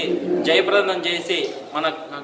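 A man speaking in Telugu, delivering a statement in a small room.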